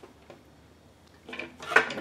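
Faint handling of damp cotton fabric, then near the end a sharp knock of a spool of sinew being picked up off a tabletop as a voice starts.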